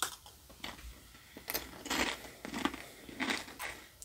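A Doritos tortilla chip bitten with a crunch and then chewed, giving about half a dozen irregular crunches in the mouth.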